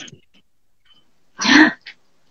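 A person clears their throat once, in a short, rough burst about one and a half seconds in, with a faint trailing bit just after.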